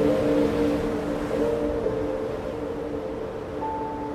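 Ambient music: slow, sustained held notes over a steady wash of storm surf noise, with a higher note coming in near the end.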